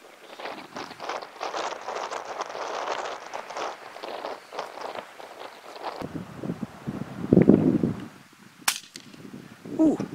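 A single sharp shot from a .25-caliber FX Wildcat PCP air rifle about nine seconds in. The pellet goes right over the jackrabbit's head, a miss. The shot comes after several seconds of rustling noise.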